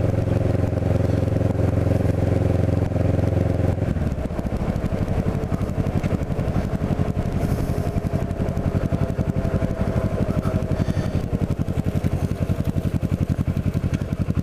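Kawasaki Ninja 650R parallel-twin engine heard from the rider's seat while riding. It holds a steady note, then about four seconds in drops to lower revs and runs on as a low, pulsing engine note.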